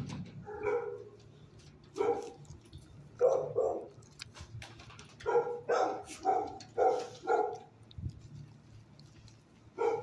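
Dog barking in short single barks, then a quicker run of about five barks a little past the middle.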